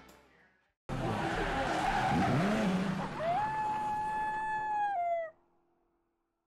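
Outro sound effect: after a moment of silence, a rushing noise, then a long high squeal-like tone that glides up, holds steady and sags at the end before cutting off suddenly.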